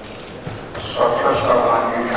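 A man's voice speaking into a microphone, starting about a second in after a short lull.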